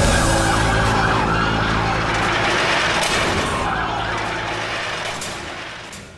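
Heavy rock soundtrack ending on a held final chord, with high tones sliding in pitch over it, slowly fading and dying away near the end.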